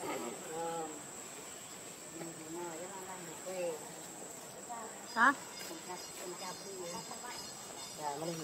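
Insects droning steadily at a high pitch, with scattered voices under them. About five seconds in, a short, sharp rising squeal stands out as the loudest sound.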